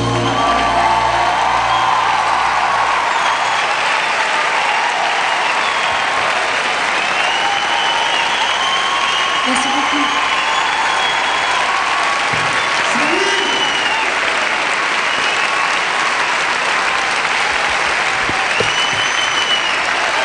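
Audience applauding and cheering, with whoops rising over the clapping. The last held note of the song ends in the first second.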